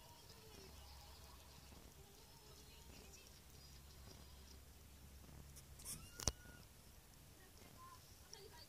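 Near silence with a faint low steady purr from a cat being groomed, which fades out about five and a half seconds in; one sharp click follows about six seconds in.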